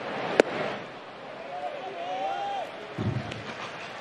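A pitched baseball popping into the catcher's mitt, one sharp crack about half a second in, over the steady murmur of a ballpark crowd.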